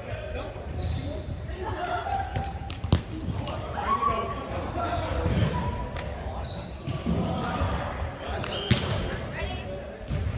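Indistinct players' chatter echoing around a large sports hall, with a ball striking the court sharply twice, about three seconds in and again near the end.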